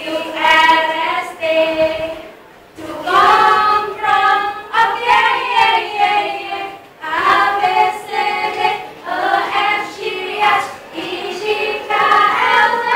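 A group of teenage girls singing a song together in loud phrases, with short breaks for breath between lines.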